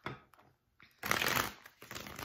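A tarot deck being shuffled by hand: a few light card clicks, then a loud burst of shuffling about a second in that lasts about half a second.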